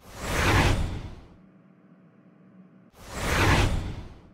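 Two whoosh sound effects, each swelling up and fading away over about a second, the second one starting about three seconds after the first.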